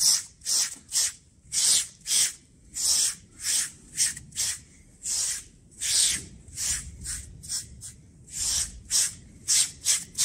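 SleekEZ deshedding tool's serrated blade scraped over a horse's short, recently clipped coat in quick, even strokes, about one and a half a second, each a brief rasp. The strokes are lifting dead hair and scurf from the coat.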